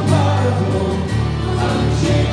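Church choir and congregation singing a hymn over instrumental accompaniment with a sustained bass line.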